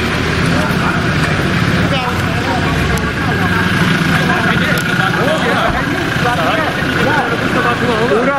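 Engines of SUVs running as they pull slowly past close by: a steady low rumble that is strongest through the first five seconds or so. Several voices chatter over it throughout.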